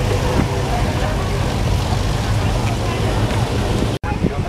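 Classic Pontiac station wagon's engine rumbling steadily as the car creeps past close by at parade pace, with a crowd chattering in the background.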